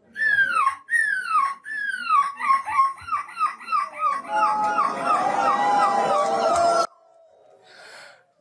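A boy imitating a seagull's screech into a microphone: three long falling calls, then a fast run of shorter falling calls at about four a second, with laughter and crowd noise joining under the later calls. It cuts off suddenly about a second before the end.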